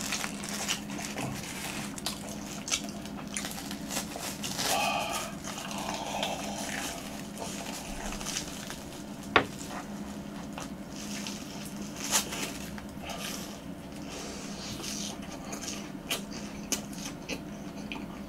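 Close-miked biting and chewing of deep-fried, crispy crumb-coated twisted-dough hot dogs (mot-nani kkwabaegi hot dogs), with the crust crackling in scattered sharp clicks.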